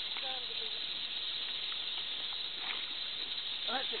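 Steady high-pitched hiss with faint voices speaking briefly near the start and again near the end.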